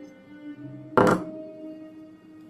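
A single sharp thunk about a second in, over background music: a steel karambit knife set down on a wooden desk.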